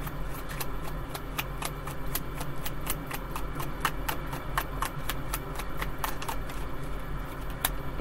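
Tarot deck being shuffled by hand: a quick, irregular run of light card clicks and flicks, about four a second.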